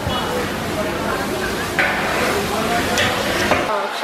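Marinated char siu pork strips sizzling as they roast in a hot drum oven over a fire, a steady dense hiss and rush whose low rumble drops away abruptly near the end.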